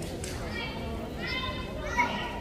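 High-pitched voices calling out in a large echoing sports hall, with a short sharp sound right at the end.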